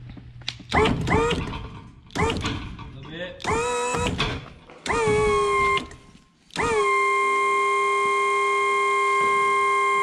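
Electric motor of a pendant-controlled lift raising a dirt late model race car. It runs in a few short bursts, each winding up in pitch, then one long steady run of about three and a half seconds that drops in pitch as it winds down near the end.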